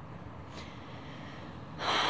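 Steady low background hiss. Near the end comes a sharp, audible in-breath from a woman just before she speaks.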